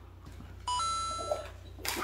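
A short electronic chime about a second in: a brief lower note stepping up to a higher held note, lasting under a second.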